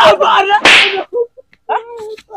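Slap-like hits in a staged scuffle: a sharp crack right at the start, then a louder, whip-like smack a little over half a second in, with short pitched cries around them.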